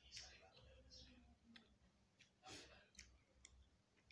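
Near silence with a few faint clicks and smacks of someone chewing and eating rice by hand.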